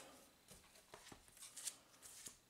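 Near silence, with faint rustles and light ticks from a stack of comic books being handled.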